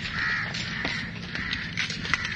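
Crows cawing, several short hoarse caws, with a few faint clicks.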